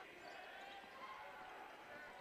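Faint basketball-arena background: a ball being dribbled on a hardwood court under a low crowd murmur.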